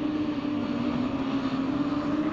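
Several autograss racing car engines running hard together on a dirt track, a steady drone with one strong held note.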